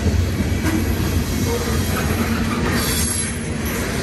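Freight train of covered hopper cars rolling past close by: a steady, loud rumble of steel wheels on rail.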